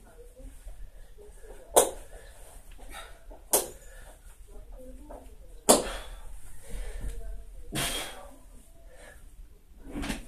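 Three sharp clicks a couple of seconds apart, the last the loudest, then a short rustling hiss: handling noise from a lifter fastening his weightlifting belt before a deadlift.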